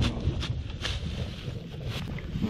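Wind buffeting the microphone, with dry straw stubble crunching and rustling as it is kicked and scraped aside underfoot; a few crisp crunches fall in the first second.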